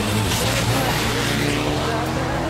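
A rally car's engine running hard as the car passes through a bend and accelerates away, its note rising slowly.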